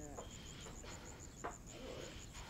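Faint outdoor ambience: an insect chirping steadily in a high, even pulse of about eight chirps a second, under faint distant voices, with a single soft click about one and a half seconds in.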